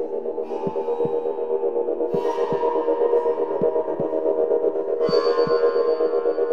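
Live-coded electronic music from Sonic Pi: a low 808 bass-drum sample beating in heartbeat-like pairs over a sustained ambient drone. Reverb-washed flute samples come in about half a second, two seconds and five seconds in.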